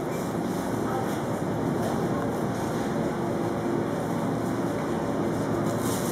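Steady supermarket background noise, with a faint murmur of voices in it.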